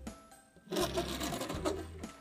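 Die-cast toy car's wheels rolling across a hard surface for about a second, a quick rattling whirr. Background music plays underneath.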